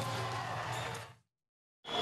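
A faint background sound bed under the game footage fades out a little over a second in. It is followed by about half a second of dead silence at an edit.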